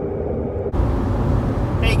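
Steady road and engine noise inside a moving car's cabin. Less than a second in it changes abruptly to a louder rumble with more hiss.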